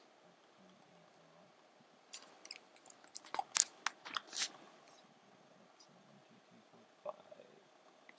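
A quiet car cabin with a run of about a dozen sharp clicks and ticks lasting about two seconds in the middle, the loudest near the centre.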